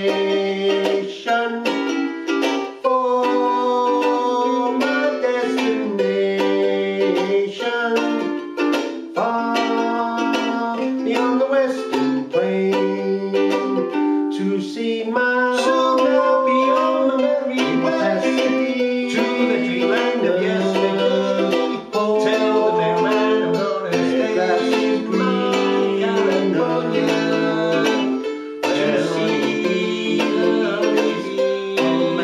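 Martin S1 soprano ukulele strummed in a steady, bouncy rhythm, with a man singing over it.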